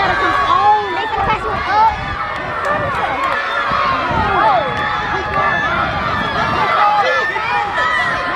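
Spectators shouting and cheering on runners during a race, many voices overlapping without a break.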